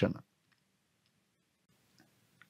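The last syllable of a man's narration, then near silence with a few very faint, short clicks.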